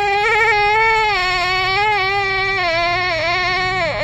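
One long, high wailing cry held for about four seconds, its pitch wavering slightly, dipping briefly near the end and then falling away as it stops.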